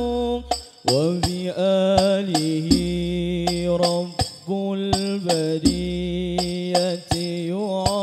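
Al-banjari hadrah music: a male lead voice sings a held, wavering sholawat melody in long phrases over a steady pattern of struck frame drums (terbang).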